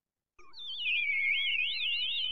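Synthesized electronic sound effect: several high, wavering tones that warble up and down together, starting about half a second in after a moment of silence.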